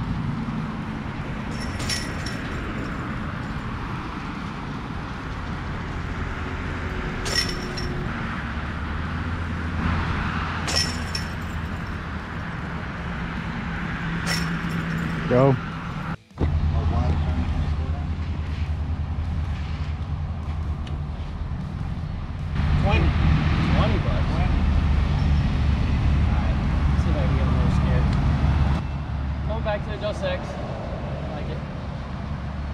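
Discs striking the metal chains of a disc golf basket: four sharp metallic clinks spread over the first fifteen seconds. Underneath is a steady low rumble of road traffic, louder near the end.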